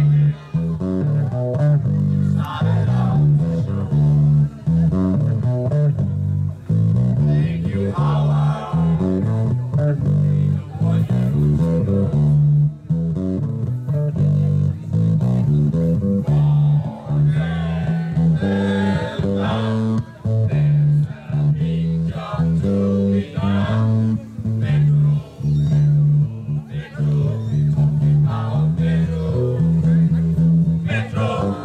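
Group of people singing from lyric sheets over amplified backing music with a prominent bass line and guitar, played through PA loudspeakers.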